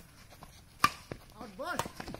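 Badminton rackets hitting a shuttlecock in a rally: a sharp, loud hit a little under a second in and a second, lighter hit near the end.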